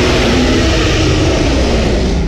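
A loud rushing noise with a deep rumble underneath, its upper hiss fading away in the second half.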